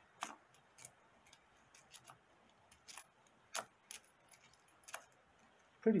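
Canadian pennies clicking against one another as they are pushed off a roll and spread across a fabric mat: about a dozen quiet, irregular clicks.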